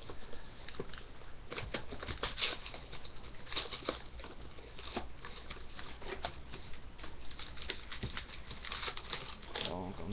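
Plastic shrink-wrap crinkling and tearing and cardboard clicking as a sealed box of hockey card packs is unwrapped and opened, in a quick, irregular run of crackles and snaps.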